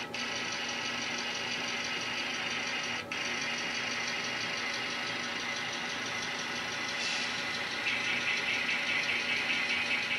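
N scale model diesel locomotive running and pulling cars, a steady mechanical hum with a brief dip about three seconds in. It gets louder and brighter from about eight seconds as the train moves off.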